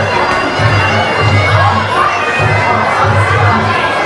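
Fight crowd cheering and shouting, with music carrying a pulsing low beat underneath.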